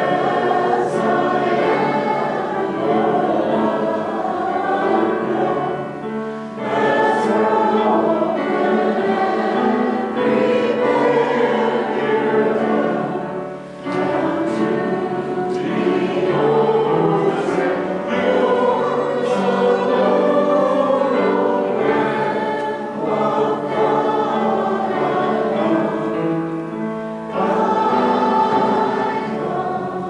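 A group of voices singing a hymn together in long sustained phrases, with short breaths between lines.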